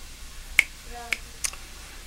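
Three short, sharp clicks within about a second, over faint room tone.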